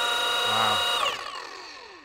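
Rotary paint polisher running with a steady high whine, switched off about a second in and spinning down, its pitch falling away as it slows.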